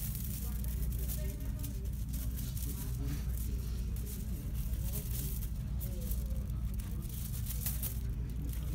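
Thin black plastic film crinkling and rustling as it is handled, in short irregular bursts over a steady low hum.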